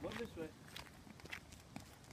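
A brief voice at the start, then faint footsteps: a few light, spaced taps as a toddler and a dog walk from grass onto asphalt.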